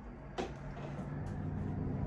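A single soft knock about half a second in as a hand goes into a leather tote bag, then a low steady hum that grows gradually louder.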